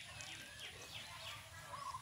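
Faint bird calls in the background, a run of short, quick falling chirps several times a second.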